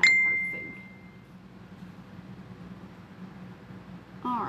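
A single bright ding right at the start: one clear high tone that fades away over about a second.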